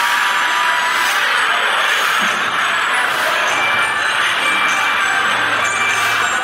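Music from a live concert recording, with a crowd cheering throughout at an even, loud level.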